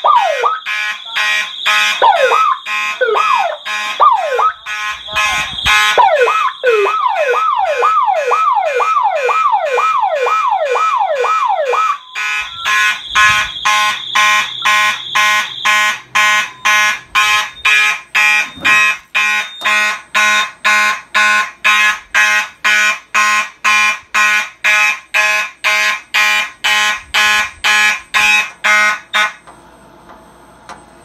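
Alarm system going off: an electronic siren sweeping downward in pitch about twice a second, over fire alarm horns pulsing and a steady high beep. About twelve seconds in the sweeping siren stops, and the horns keep pulsing about twice a second until all cuts off just before the end as the panel is silenced and reset.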